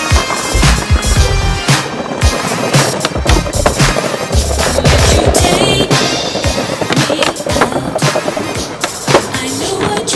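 Skateboard on pavement: wheels rolling and repeated sharp clacks of the board popping and landing, over music.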